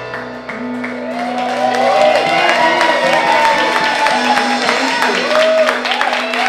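A live band holds its closing note as the audience breaks into cheers and whoops. Applause builds toward the end.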